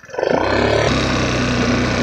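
150cc GY6 scooter engine opening up from a low idle about a quarter second in, then pulling at a steady high rev.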